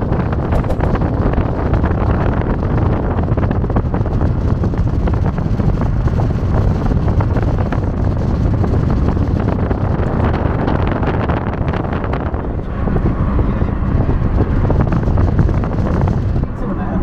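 Wind buffeting the microphone of a camera held outside a moving car, over a steady rush of road and engine noise.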